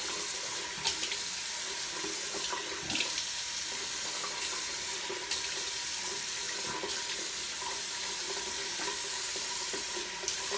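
Bathroom sink tap running steadily while a face is rinsed with splashed water, with a few short louder splashes along the way.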